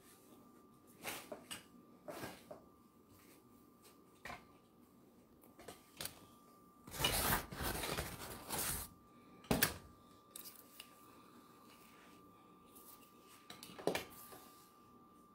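Faint household noises from someone moving about out of view: scattered knocks and rustles, a louder stretch of rustling about halfway through and a sharp knock just after it, over a faint steady high tone.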